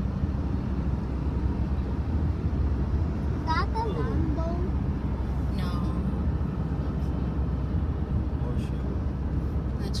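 Steady low road and engine rumble inside a moving car's cabin, with brief indistinct voices near the middle.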